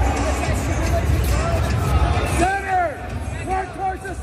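Crowd chatter and background music in a large hall. A heavy bass line drops out about halfway through, and drawn-out voiced calls follow in the second half.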